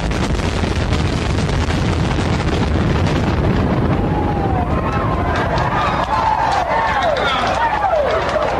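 A concrete-and-steel high-rise collapsing in a controlled demolition implosion: a loud, continuous deep rumble full of crackling debris. From about halfway through, spectators' voices shout and whoop over it.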